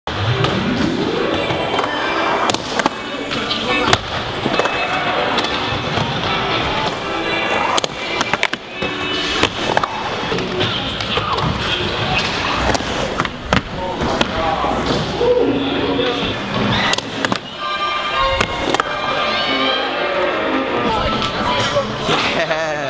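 Skateboard wheels rolling on the park's ramps, with sharp board slaps and impacts every few seconds, under music and voices.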